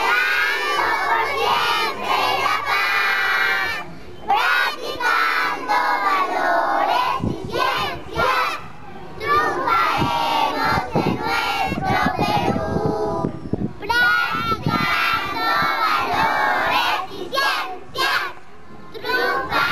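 A large group of young girls singing together at full voice, close to shouting. The phrases are broken by short pauses about four seconds in and again near fourteen seconds.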